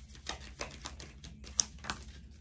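Tarot cards handled and shuffled by hand to draw a clarifier card: a run of quick, irregular light clicks, with two sharper clicks near the end.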